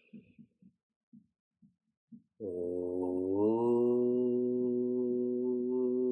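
A man's voice chanting one long held note that starts about two and a half seconds in, rises slightly in pitch once, then holds steady.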